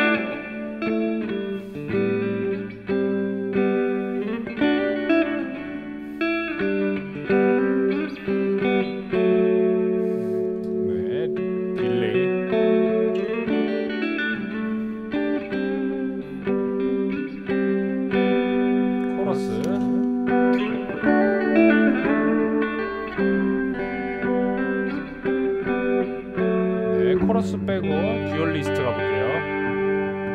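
Ibanez RGMS7 seven-string multi-scale electric guitar played through a Fender Twin Reverb amp and pedal effects in a clean, lightly driven tone. Chords and single notes ring over one another throughout.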